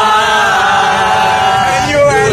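A group of voices singing or chanting together on one long held note, which breaks and changes near the end.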